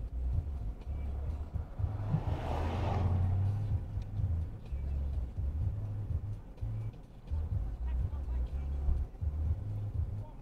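Low, uneven rumble heard from inside a stopped car at the roadside, with a swell of noise from a vehicle passing about two to three seconds in.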